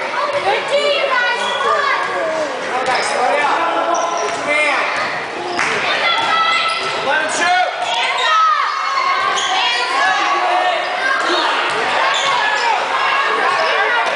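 A basketball bouncing on a hardwood gym floor during play, among echoing voices of spectators and players in the hall.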